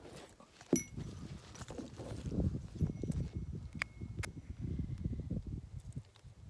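Irregular rustling and bumping of handling noise on a hand-held phone microphone, with a few light metallic clinks and a faint ring from a small brass hand bell as it is picked up, about a second in and twice near the four-second mark.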